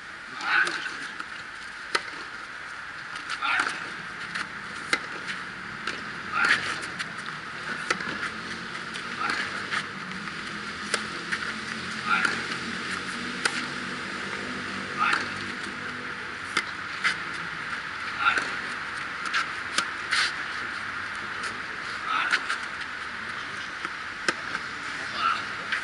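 Tennis rally on a clay court: racket strikes on the ball about every second and a half, alternating louder and fainter as the two players trade shots. A short vocal grunt rides on many of the louder strokes.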